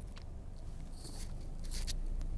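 Handling noise: a few short rustles and clicks as a diecast toy car and its cardboard blister card are handled in the fingers, the last pair near the end.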